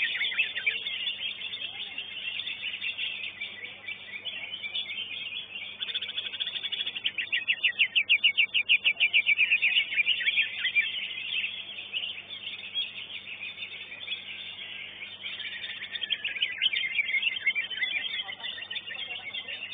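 Cucak ijo (greater green leafbird) singing continuously in a cage, a varied twittering song with a fast run of rapidly repeated notes in the middle.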